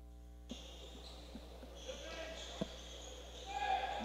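Faint sound of a basketball bouncing on the court a few times, at uneven intervals, in a large hall. Faint voices in the gym rise near the end.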